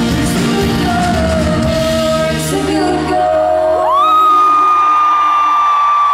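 Live duo with acoustic and electric guitars and sung vocals playing a song's closing bars, which die away about three seconds in. Then a single long, high-pitched scream swoops up and is held steady.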